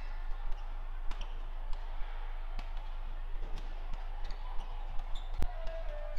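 Badminton rally: the shuttlecock is struck back and forth with sharp racket pops at irregular intervals, with players' shoes briefly squeaking on the court, over a steady hall hum. The loudest hit comes about five and a half seconds in.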